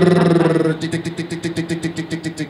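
A man's voice into a microphone imitating a spinning prize wheel: a long held vocal tone that cuts off under a second in, then a steady run of clicking ticks, about eight a second, made with the mouth.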